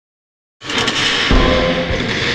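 Logo-intro sound effect: after a moment of silence, a loud rushing swell rises sharply about half a second in. A deep hit lands a little over a second in, with low sustained tones ringing under it.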